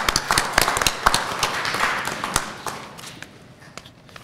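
Audience applauding: many hands clapping together, the clapping thinning out and dying away over about three seconds.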